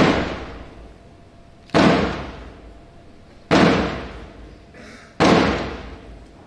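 Four loud hits about 1.7 seconds apart, each with a sudden start and a crash that dies away over about a second.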